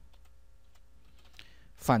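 A few faint keystrokes on a computer keyboard as the word "else" is typed.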